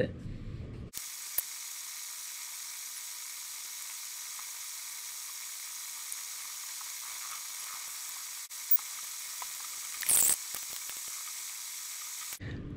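Steady high-pitched hiss with faint steady whining tones and no low rumble: the room's background noise sped up in a time-lapse. A short crackling burst about ten seconds in.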